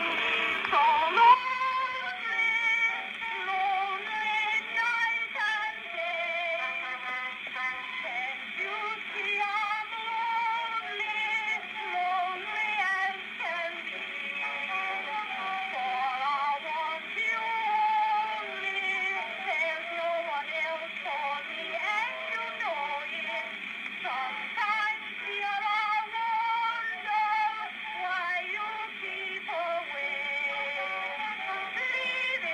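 Music from an early acoustic phonograph record, a woman singing with accompaniment. The sound is thin and narrow, with no deep bass and no high treble.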